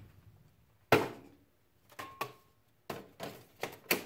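Cordless power tools and a cordless flashlight knocking against each other and the shelf as the light is pulled out one-handed. A solid thump comes about a second in, light taps with a short ring near two seconds, then a quick run of clicks and knocks toward the end.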